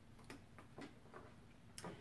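Near silence with about four faint, light taps of playing cards being handled and laid on a tabletop.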